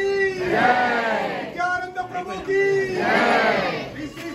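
A group of voices chanting loudly together, held notes alternating with phrases that rise and fall.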